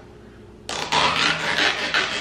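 Peel-off seal being pulled back from a small plastic topping cup: a ragged tearing rasp that starts a little under a second in and keeps going.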